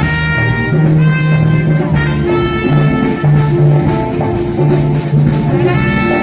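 Big band playing live jazz: the brass section sounds loud chords with sharp attacks, each held, over saxophones, bass and drums.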